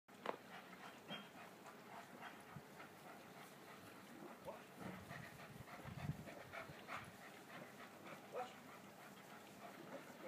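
German Shepherd panting faintly while walking at heel, with scattered soft clicks and rustles.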